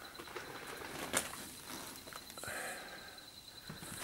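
Faint, steady chirring of night insects such as crickets, with one sharp click about a second in.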